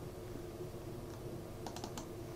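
A few faint clicks of a computer mouse, one about a second in and a small cluster near the end, over a low steady hum.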